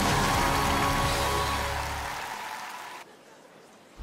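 Live band's final chord of a power ballad, with cymbal shimmer, fading out over about three seconds, then a cut to near silence for the last second.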